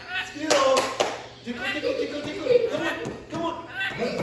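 Indistinct talking with no clear words, and a sharp tap about half a second in.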